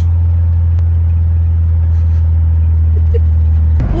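Volkswagen Kombi van driving at night, its engine and road noise heard from inside the cab as a loud, steady low drone that cuts off suddenly near the end.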